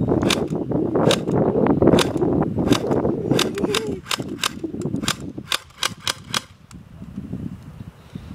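Electric airsoft rifle firing BBs one shot at a time: a quick string of sharp clicks, roughly three a second, that stops shortly before the end.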